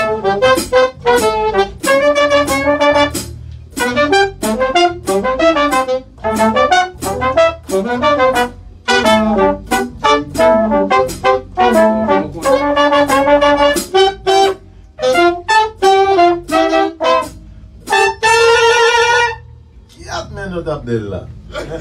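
Horn section of saxophone, trombone and trumpet playing a riff together: short punchy phrases with brief gaps and a few held notes, ending on a long, loud held chord near the end.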